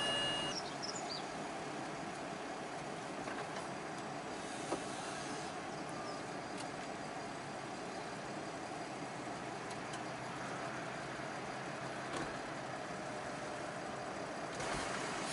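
BMW 325i Convertible's folding steel hard top retracting after a single button press: its mechanism runs with a steady whirr, with a faint click about five seconds in and another near the end.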